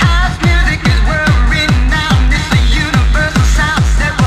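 Hard dance music from a continuous DJ mix: a fast, steady kick drum on every beat under a short repeating synth-lead riff whose notes bend and glide in pitch.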